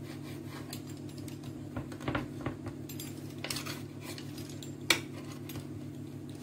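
Kitchen knife cutting through bread dough, its blade tapping and scraping on a hard cutting board in a few sharp clicks; the loudest comes about five seconds in.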